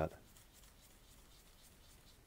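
Faint scrubbing of a paintbrush working acrylic paint together on a palette.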